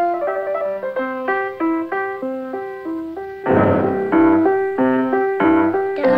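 Piano playing a quick run of single notes in scale and arpeggio figures. About halfway through it grows louder and fuller, with chords.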